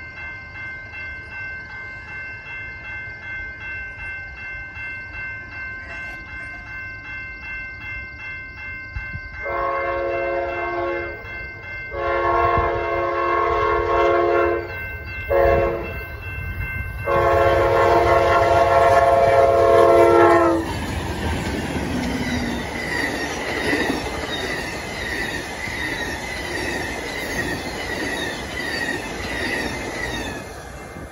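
Siemens Charger locomotive's horn sounding the grade-crossing pattern: two long blasts, a short one and a final long one. The train then passes close by, with steady wheel noise and regular clickety-clack of the cars' wheels over the rail joints.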